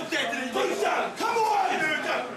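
A group of rugby players shouting together in a team huddle, overlapping loud voices in a rallying cry.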